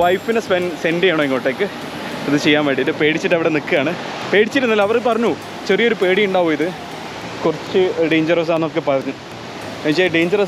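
A man talking, over a steady rush of water.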